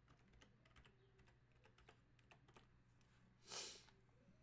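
Faint typing on a computer keyboard: scattered quick key clicks. A brief, louder rush of noise comes about three and a half seconds in.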